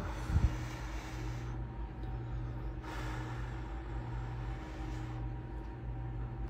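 A person blowing on a hot spoonful of peach dessert to cool it: an airy hiss of breath for the first second and a half and again from about three seconds in, with a low knock just after the start. A steady low hum sits underneath.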